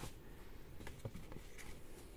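Faint handling sounds of a hand on a smartphone resting on a rubber work mat: a light click at the start, then a few soft taps about a second in.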